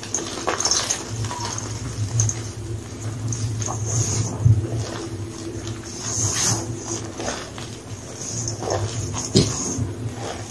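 Blocks of gym chalk crushed and squeezed by hand in a bowl, a soft powdery crunching with many small crackles and squeaks, over a steady low hum.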